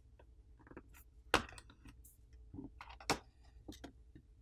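Plastic back housing of a Poco M4 5G smartphone being lifted and pried off its frame: a scatter of small clicks and ticks from the cover and catches, with two sharper snaps, one about a third of the way in and one near three quarters.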